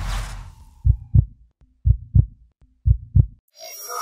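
Heartbeat sound effect: three double thumps (lub-dub) about a second apart, after a fading whoosh. Near the end a bright shimmering swell begins.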